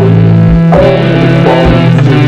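Loud, dense guitar-based noise-rock/shoegaze music: sustained guitar and bass chords held in a thick wall of sound, changing a couple of times, with no drum hits standing out.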